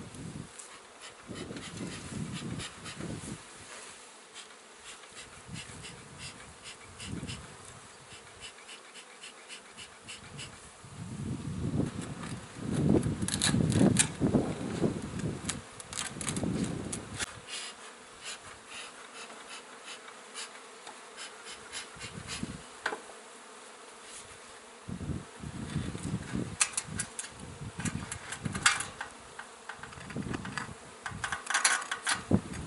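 A swarm of honeybees buzzing steadily around a nest in a shed wall, stirred up. Bursts of sharp cracking and scraping from old composite siding being pried off come about twelve to seventeen seconds in and again near the end.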